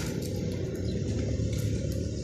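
Steady low outdoor background rumble with a faint hiss above it, with no distinct event.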